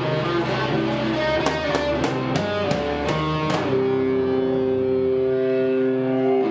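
Live rock band playing loud, with electric guitar, bass guitar and a Pearl drum kit. About three and a half seconds in, the drums stop and the guitars hold one sustained chord ringing out.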